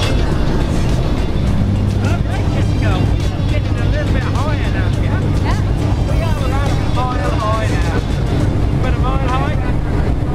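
Jump plane's engine running steadily, heard inside the cabin as a loud, even low hum, with people's voices talking over it for most of the time.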